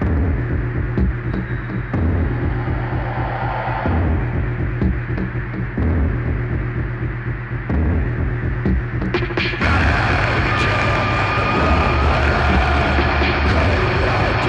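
Live dark industrial electronic music: a deep, throbbing bass pulse that swells in blocks about every two seconds. A little under ten seconds in, a louder, harsher noise layer comes in, with a high droning tone over the bass.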